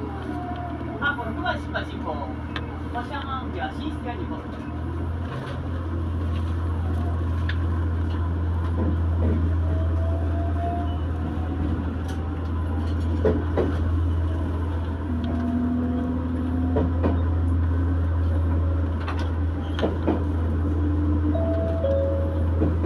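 Diesel railcar running under power as it pulls away and gathers speed: a steady low drone that steps up and grows louder about five seconds in, with scattered clicks from the running gear.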